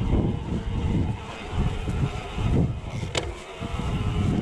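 Mountain bike riding down a dirt singletrack: uneven rumble of the tyres and bike over the trail mixed with wind buffeting the microphone, and one short sharp click about three seconds in.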